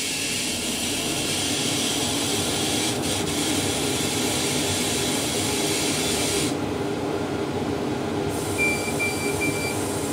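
Laser engraver with rotary attachment running a test pattern: a steady rush of air with a machine hum underneath. The high hiss cuts out about two-thirds of the way through, and near the end three short beeps at one pitch sound.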